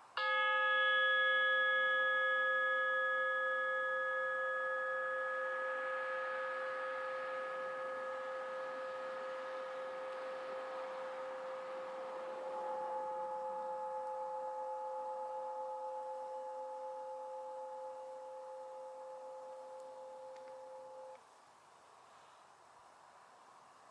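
A meditation singing bowl struck once, ringing with a low main tone and several higher overtones that die away slowly over about twenty seconds. One overtone swells back about halfway through, and the ringing cuts off suddenly about a second before the end.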